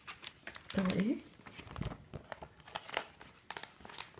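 Plastic page sleeves of a scrapbook crinkling and crackling as pages are handled and turned, a run of small irregular clicks and rustles. About a second in, a short pitched voice sound that dips and rises is the loudest thing.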